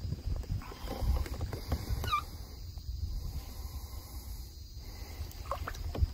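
Low rumbling and irregular knocks of handling on a fishing kayak as a small traíra is lowered by hand into the water for release, with a short falling squeak about two seconds in.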